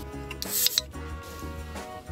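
Background music, with a short hissing burst about half a second in as an energy drink can's ring-pull is cracked open.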